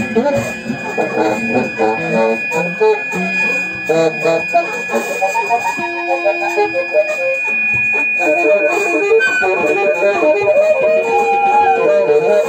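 Free-improvised ensemble music: a busy run of short pitched notes over thin, steady high tones, with a few longer held notes from about six seconds in.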